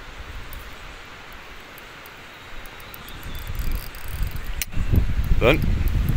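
Low rumbling buffet of wind on the microphone and handling noise, swelling about halfway through, with one sharp click just before a short shout.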